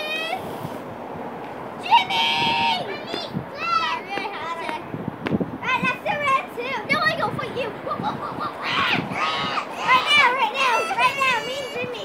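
Children's high-pitched voices shouting and calling out over one another as they play, with one long held shout about two seconds in.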